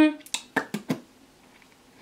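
Lips smacking and parting after freshly applied lip oil, about five short wet clicks in the first second, then quiet.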